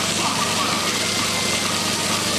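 Steady splashing and hiss of fountain water jets falling onto the pavement, with faint crowd voices beneath.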